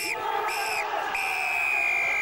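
Referee's whistle blowing full time: two short blasts, then a long held blast, over a cheering crowd.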